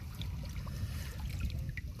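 Steady low rumble of lakeshore water, with a couple of faint small ticks.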